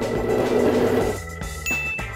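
Edited-in sound effects over background music: a short grainy rushing burst in the first second, then a bright electronic ding near the end as the on-screen lap counter appears.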